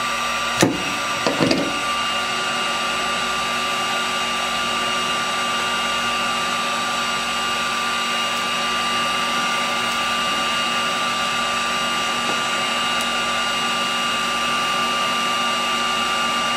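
VT1100 electric heat gun running steadily: an even blower hiss with a fixed whine. About half a second in there is a sharp click, then a short scraping clatter as a knife works the adhesive heat shrink off the metal rod.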